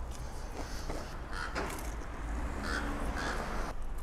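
Close-up biting and chewing of a crunchy breaded fried piece of food, with a few short throaty sounds in the second half.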